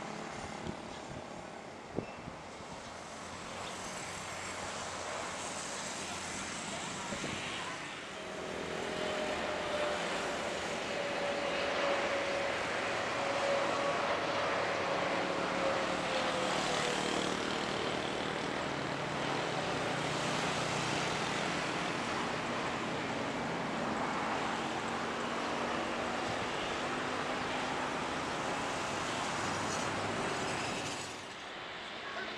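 Wide-body jet airliners landing: continuous jet engine noise, with a whine that falls slowly in pitch through the middle.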